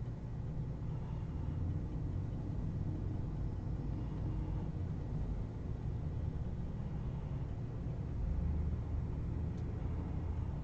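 Steady low rumble of background room noise, with no distinct events apart from a faint tick near the end.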